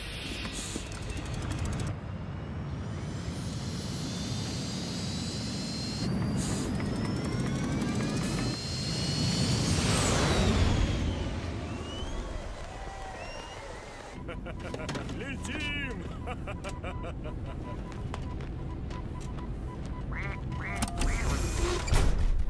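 Launch roar of a film's craft lifting off at the end of a countdown, swelling with a climbing whine to its loudest about ten seconds in and then easing off. From about fourteen seconds it gives way to music with a steady beat.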